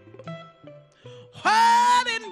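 Live soul band playing softly, then a woman's singing voice comes in loud about one and a half seconds in, sliding up into a long held note.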